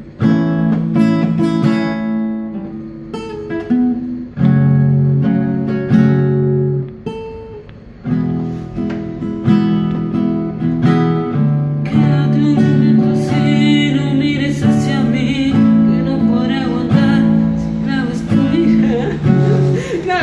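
Acoustic guitar strummed in chords, with brief breaks about four and seven seconds in. A man's singing voice comes in over the guitar about twelve seconds in.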